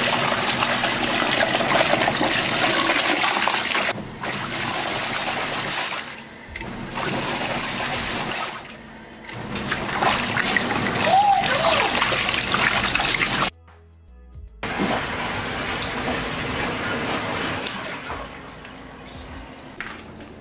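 Zeny portable twin-tub washing machine's wash tub agitating, churning and sloshing soapy water and clothes. The sound comes in several short clips with sudden cuts, and a brief silence about two-thirds through.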